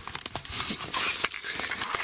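Irregular rustling and crackling clicks: handling noise from a hand-held camera and the clothing of the person holding it as the camera is moved.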